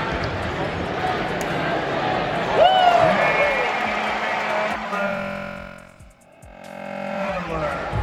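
Basketball arena crowd noise during live play, with a single voice calling out, rising and falling, about two and a half seconds in. Sustained music tones from the arena sound system follow, and the sound dips briefly about six seconds in before the crowd noise returns.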